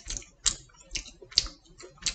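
Crisp crackling clicks from a piece of pizza crust being broken apart by hand: about five sharp cracks, roughly one every half second.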